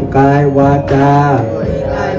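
A man chanting a Thai Buddhist prayer of asking forgiveness in a slow, sung style, holding two long notes, with musical accompaniment underneath.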